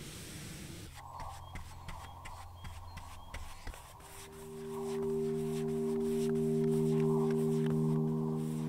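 A cloth and then a brush rub wood stain onto timber boards: soft scrubbing with small clicks. From about halfway, background music of long held chords fades in and becomes the loudest sound.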